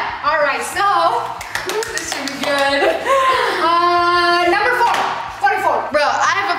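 Hand clapping among excited voices and laughter, the claps mostly in the first two seconds; a little past the middle a voice holds one long note for about a second.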